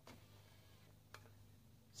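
Near silence with two faint clicks, one at the start and a sharper one about a second in, from the camera being switched and handled.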